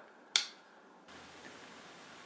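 A single sharp click of the plastic rocker switch on an inverter/charger's remote control panel being pressed to switch the inverter on.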